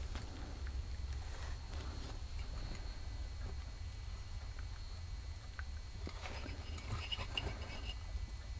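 Quiet, steady low hum with a few faint, short clicks as a metal turbocharger cartridge is turned in the hands.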